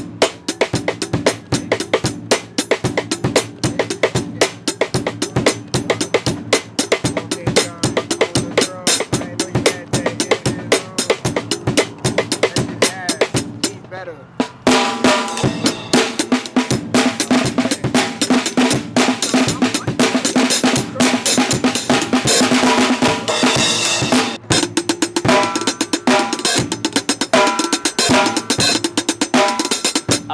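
Acoustic drum kit played as a beat, with a dense run of fast stick strokes on drums and cymbals. From about halfway the sound turns fuller, with more sustained ringing under the strokes.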